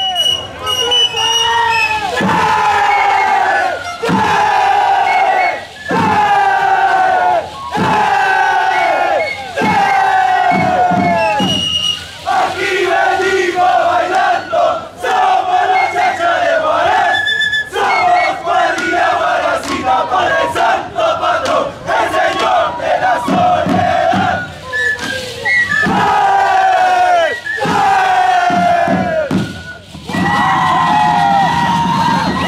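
A Shacshas dance troupe yelling together in unison: short group shouts that slide down in pitch about every two seconds, then a long, wavering held cry through the middle, then falling shouts again near the end.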